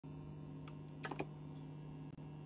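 Faint lead-in groove noise of a spinning vinyl 45 under the stylus: a steady low hum with a quick cluster of three or four clicks about a second in.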